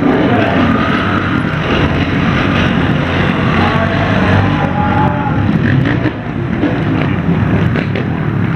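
Several trials motorcycle engines running close by, their throttles rising and falling as the riders ride and wheelie on wet tarmac.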